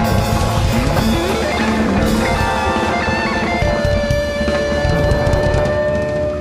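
Jazz-fusion band playing live: fast electric guitar lead over drums, bass and keyboards. A long high note is held from a little past halfway.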